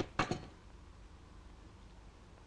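A man says one short word, then only faint room tone with a steady low hum.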